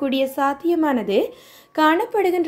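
A woman's voice reading the news, with a brief pause partway through.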